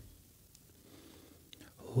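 A pause in conversation: near silence with faint room tone, a soft breath or mouth sound shortly before the end, then a man's voice begins right at the end.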